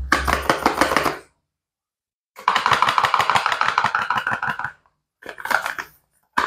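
Gloved fingertips tapping and scratching rapidly on a cardboard soap box, about ten taps a second, in three bursts with short silences between.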